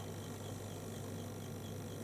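Steady background room tone: a low electrical hum with faint hiss and no distinct sounds.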